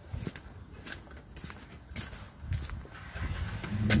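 Footsteps on a concrete driveway, irregular steps with light knocks and phone-handling noise as someone walks around a trailer.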